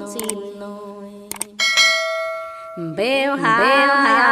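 A woman's sung phrase trails off, then a single bell-like chime rings and fades about a second and a half in. A new woman's voice starts singing just before three seconds in.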